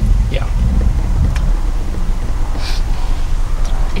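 Low, steady rumble of a pickup truck creeping forward at walking pace while towing an Airstream travel trailer through a turn, heard from the truck's exterior with some wind on the microphone.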